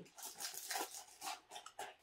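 Small cardboard model-kit boxes and their contents being handled: a quick string of light taps, scrapes and rustles, about a dozen short sounds in two seconds.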